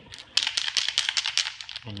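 A spray paint can being shaken, its mixing ball rattling in a quick run of clicks for about a second and a half.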